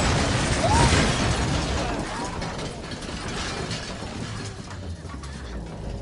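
Film sound effects of a house being flipped over: a low rumble with rattling, clattering noise and a few short rising-and-falling tones. It is loudest about a second in and fades away.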